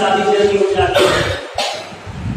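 A man coughing into a lectern microphone, two short coughs about a second in.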